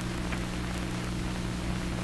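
Steady hiss with a low, even hum: the background noise of an early sound-film soundtrack, with nothing else standing out.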